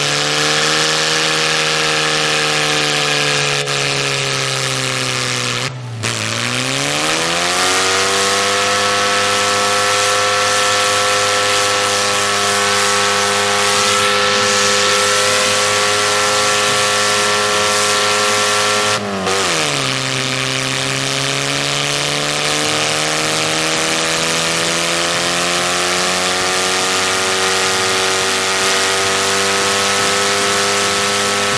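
Ford Escort's engine held at high revs in a tyre-smoking burnout. Twice, about six seconds in and again near twenty seconds, the revs drop sharply and climb back up.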